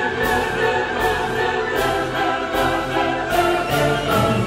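Classical music: an orchestra with a choir singing held notes.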